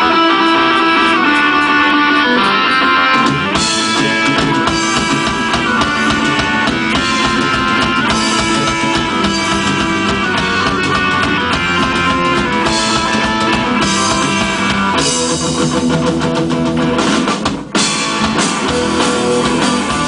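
Live hardcore punk band playing: electric guitars and drum kit, the sound filling out with cymbals about three and a half seconds in, and a brief break shortly before the end.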